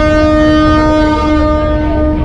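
A river passenger launch's horn sounding one long, steady blast over a low rumble.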